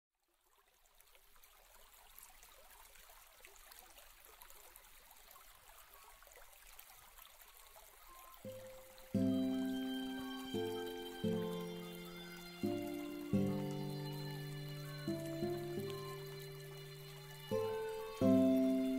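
A soft, even trickling-water sound fades in, then calm background music enters about eight seconds in, its notes struck every second or so and fading away.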